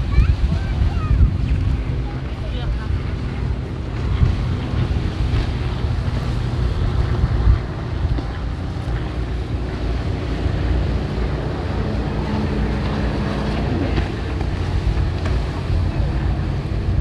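Wind buffeting the microphone, with a steady low engine drone from jet skis and motorboats on the water underneath.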